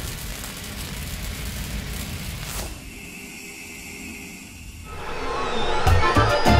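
Designed sound for an animated logo: the tail of a whoosh-and-hit fading out, then a sweeping whoosh about two and a half seconds in, followed by a muffled stretch. Music with a beat starts right at the end.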